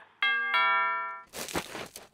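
A two-note ding-dong doorbell chime, whose ringing notes fade over about a second, followed by a short rushing whoosh near the end.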